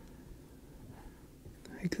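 Quiet room tone with a faint low hum, then a man starts speaking near the end.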